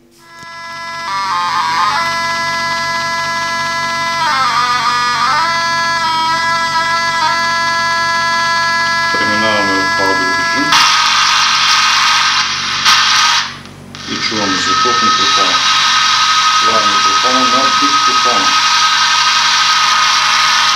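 Nonlinear junction detector's audio output over a hidden digital audio recorder: first a steady electronic tone of several notes whose pitch dips briefly twice, then, about 11 seconds in, after switching to audio mode, a loud hiss with a steady whine, the demodulated sound of the room and of the recorder's electronic components, with faint voices in it.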